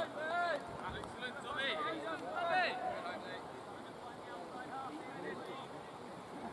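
Distant, unintelligible voices calling out in short rising-and-falling calls, fading to quieter background after about three seconds.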